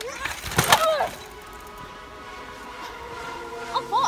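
A mountain bike crash on a dirt jump: sharp thuds of the bike and rider hitting the ground with a short yell, loudest in the first second. After that the sound is steadier, with another brief voice near the end.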